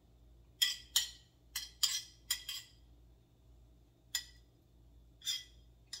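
A utensil scraping and clinking against a ceramic plate as cooked vegetables are pushed off it into the pan: a quick run of short clinks in the first couple of seconds, then a few more spaced apart.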